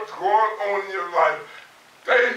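A man's voice preaching a sermon, in short emphatic phrases.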